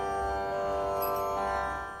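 A steady Carnatic shruti drone, a dense chord of many held tones with no voice over it, fading away near the end.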